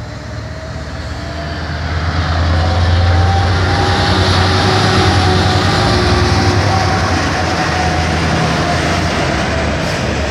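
Class 66 diesel locomotive's EMD two-stroke V12 engine running as the locomotive draws slowly in alongside the platform. It grows louder over the first few seconds and stays loud as the engine passes close by, with its wagons rolling after it.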